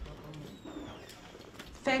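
Quiet hearing-room tone with faint, indistinct low murmurs. Near the end a voice begins speaking.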